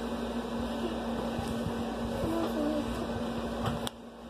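Steady mechanical hum of a household appliance or fan: one constant low tone over an even hiss. Faint voices come in the background a little past halfway, and a click near the end is followed by the hiss dropping away.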